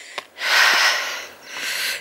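A person's breath close to the microphone: a long, hissy exhale starting about a third of a second in, then a shorter breath near the end.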